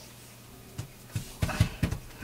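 Hands pressing and patting a paper cutout down onto a gel printing plate on a tabletop: a few soft thumps and taps in quick succession about halfway in, after a quiet start.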